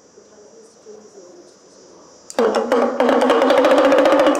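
Small hand-held hourglass drum of the damaru type twirled so its strikers beat rapidly on the heads. It gives a fast, even drumroll at a steady pitch that starts about two seconds in and carries on to the end.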